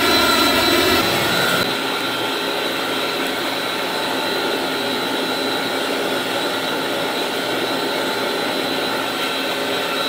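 Steady roar of the slide-tower pump equipment running at full speed: 40 hp electric motors driving centrifugal pumps, mixed with water churning in the surge pit. A deeper hum eases under two seconds in.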